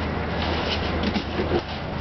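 Light knocks and scraping of a large wooden speaker cabinet being gripped and shifted, over a steady low hum.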